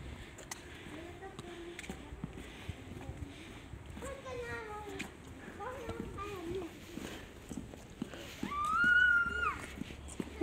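Footsteps on a wet tiled pavement with children's voices further off, too faint for words. Near the end a child gives one long, high-pitched call.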